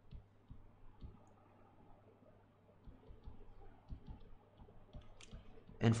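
Faint, irregular clicks and taps of a stylus on a tablet screen during handwriting, over a faint steady low hum.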